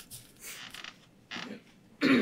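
A few faint, short creaks and rustles in a quiet room.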